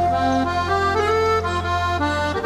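Accordion playing a hymn melody over held bass notes and an orchestrated backing, the melody stepping upward through several notes in the middle of the passage.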